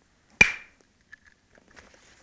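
A single sharp strike of an antler billet on a heat-treated Swan River chert core, about half a second in, with a brief ringing tail as a blade is struck off; a few faint ticks follow.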